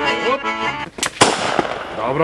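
Accordion music that breaks off just under a second in, followed by a sharp click and then a loud bang with a hissing tail that fades out.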